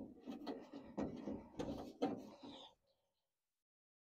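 A hand working grease into a car door's window track: rubbing and scraping against the door's inner metal, with a few sharp knocks, stopping about three seconds in.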